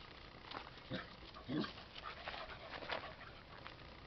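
A dog making several faint, short sounds a second or so apart, the loudest about a second and a half in.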